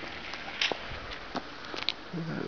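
Footsteps on a pavement, a few light irregular clicks and scuffs over a steady background hiss of outdoor noise.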